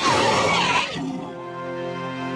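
Roar of a computer-animated entelodont, a designed animal call with a wavering pitch that cuts off about a second in, over background music that carries on afterwards.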